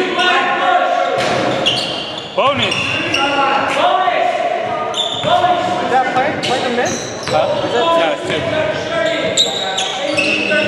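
Basketball bouncing on a hardwood gym floor, with players' voices ringing in the large hall.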